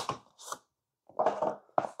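Cardboard packaging being handled: two short scraping rustles as a lidded box is pulled apart, then a cluster of soft knocks as a box is set on the wooden table.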